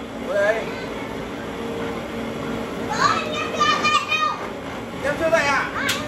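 Children's high voices calling and chattering in short bursts, over a steady low hum that fades out about halfway through.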